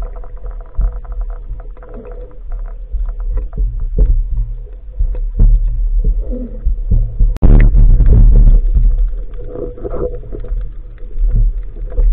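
Muffled underwater rumble of water moving against an action camera's waterproof housing, with scattered clicks and crackles. The sound breaks off suddenly about seven seconds in and picks up again just as loud.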